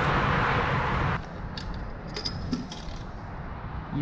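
Steady outdoor noise that cuts off about a second in, followed by a scatter of light metallic clicks and clinks from coins being handled at a coin-operated shower.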